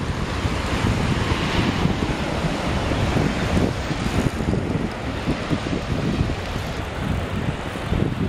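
Steady wind noise on the microphone over the rush of turbulent river water and surf at the water's edge.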